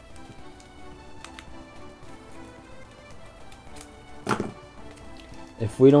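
Quiet background music, with faint crinkles and ticks from a foil trading-card booster pack being handled and opened, and one brief louder sound about four seconds in.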